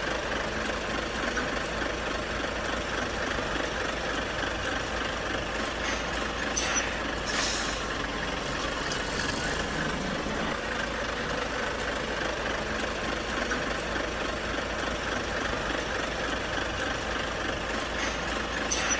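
A steady vehicle engine running, with short hissing bursts about six and a half and seven and a half seconds in.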